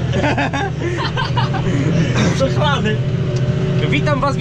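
Tractor engine running steadily inside the cab while pulling a plough, with voices over it.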